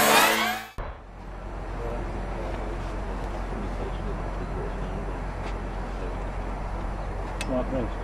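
Electronic intro music cuts off under a second in, giving way to a steady low rumble and hiss of outdoor ambience, with a man's brief voice near the end.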